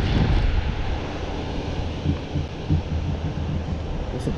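Wind buffeting the microphone: a steady rushing noise with a heavy low rumble.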